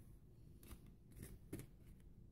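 Faint hand-shuffling of a tarot deck: a few soft, quiet flicks of cards against each other.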